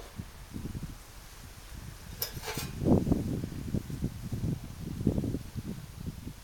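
Open flame of spilled priming petrol burning around a Borde petrol stove's burner as it preheats the vaporiser coil: an uneven, fluttering low rumble that swells and fades, with a brief hiss about two seconds in.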